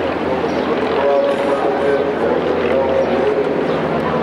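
A man speaking into a microphone over a stadium public-address system, the words indistinct under a steady background of noise.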